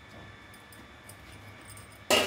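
Quiet handling with a few faint, light ticks: a steel spoon tipping salt into the wet greens and dal in a pressure cooker.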